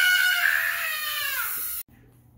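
A child's long, high-pitched squeal that slowly falls in pitch and fades, then cuts off suddenly near the end.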